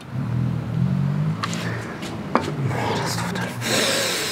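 A metal spoon scooping sour-cream dip from a small bowl onto a ceramic plate, with a couple of light clinks, over low held tones that shift in pitch. A short hissing rush comes near the end.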